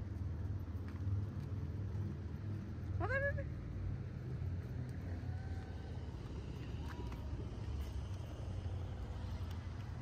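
Street ambience at a busy road crossing: a steady low rumble of traffic, with a short high cry that rises in pitch about three seconds in and a few faint distant calls or voices later.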